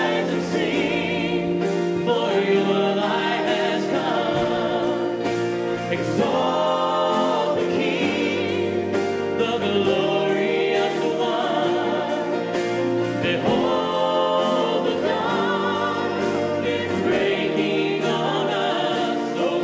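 A worship band plays a hymn live. A man sings lead with wavering held notes over acoustic guitar, cello, piano and electric guitars.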